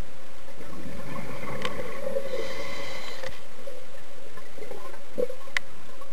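Underwater sound picked up through a dive camera's housing: a steady hum, with a short whistling tone from about two to three seconds in and two sharp clicks, one about a second and a half in and one near the end.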